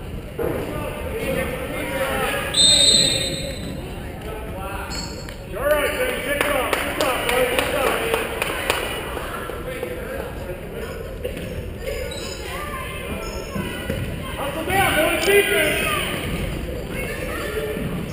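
Basketball game in a gymnasium: a ball bouncing on the hardwood floor, with spectators and players calling out, echoing in the large hall. A brief high whistle blast comes about three seconds in.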